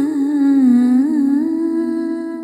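A female voice humming a wordless closing phrase: the pitch dips, then rises about a second in to a long held note.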